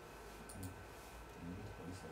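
Faint computer mouse clicks: two short clicks close together about half a second in and another near the end, over quiet room hum.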